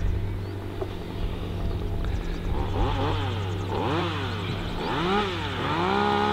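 An engine revving up and down several times, about once a second, over a steady low hum, then settling to a steady pitch near the end.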